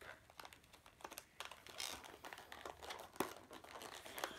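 Plastic fishing-lure packaging crinkling and clicking as it is handled and pressed closed, in faint scattered crackles and taps.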